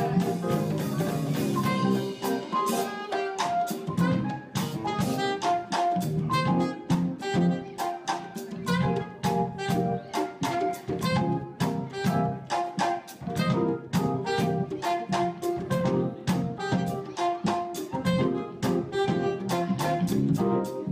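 Live jazz combo: a soprano saxophone playing a melody over a guitar and a drum kit keeping a steady beat.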